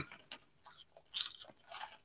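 A person chewing small crunchy cheddar Goldfish crackers, in a few soft, irregular crunches after a short click at the start.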